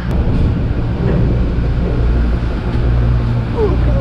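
Chairlift bottom-station drive machinery running: a steady low hum under a rushing noise.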